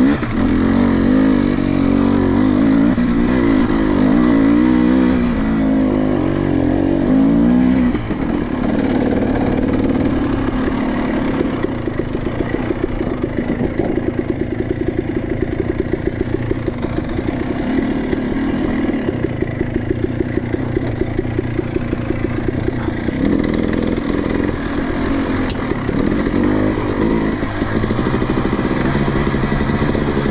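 Dirt bike engine revving up and down for the first several seconds, then running at low, steady revs for about fifteen seconds with its firing pulses audible, then revving up again near the end.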